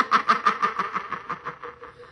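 A woman laughing into a handheld karaoke microphone with its echo effect on: a quick run of short 'ha' pulses, about six a second, fading away over two seconds.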